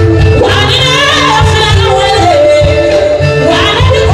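A woman singing into a microphone over a live band, with a wavering vocal line that slides down into a long held note through the middle.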